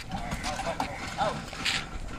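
A pair of oxen hauling a loaded bullock cart, with hoof steps on dirt and the cart rattling, and faint voices over it.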